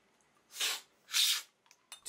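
Two quick, airy slurps of coffee sucked from cupping spoons about half a second apart. This is cupping tasters drawing the coffee in fast with lots of air to spray it across the palate.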